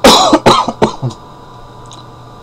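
A man coughing, four or five quick, loud coughs in the first second or so.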